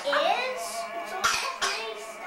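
Young children's voices, calls and rising squeals over background music, with two short sharp bursts in quick succession past the middle that sound like coughs.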